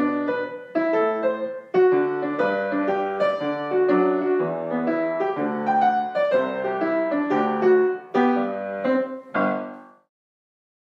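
Piano music, a brisk run of notes that cuts off abruptly at the very end.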